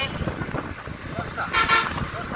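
A vehicle horn gives one short toot about one and a half seconds in, over the steady noise of a vehicle moving along the road.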